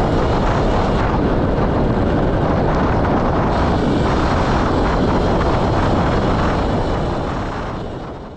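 Steady rushing noise of a Sur Ron electric dirt bike being ridden, mostly wind on the microphone along with rolling noise. It fades out near the end.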